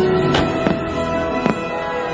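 Aerial fireworks bursting three times, about a third of a second, two-thirds of a second and a second and a half in, over the show's music.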